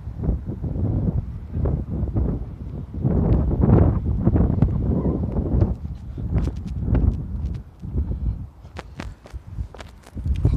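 Wind and handling noise rumbling on a phone's microphone in uneven gusts as the phone is moved about in the hand, with a few sharp clicks near the end.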